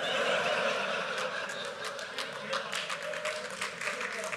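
Audience laughing at a joke, with scattered clapping. The laughter slowly dies down.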